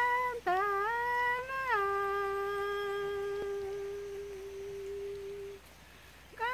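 A Shipiba woman's voice singing an icaro, the Shipibo healing chant: held notes with a dip and rise about half a second in, then a slide down to one long lower note, held for several seconds and fading out just before the end.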